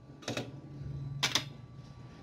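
A small soldered printed circuit board clattering on a workbench as it is handled and set down: two short bursts of clicks about a second apart.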